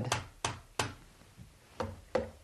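Wooden drumsticks tapping the pads of an electronic drum kit with its sound module switched off, so only the stick hitting the pad is heard: light, dull taps. There are three quick taps in the first second, then a pause and one more tap near the end.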